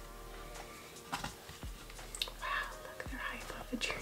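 Quiet whispering voices with a few soft clicks, over faint music.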